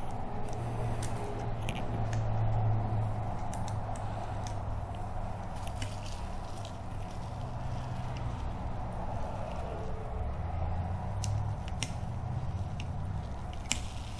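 Handling noise from fitting a metal ornament cap onto a clear plastic ornament's neck: scattered light clicks and rubbing over a steady low hum.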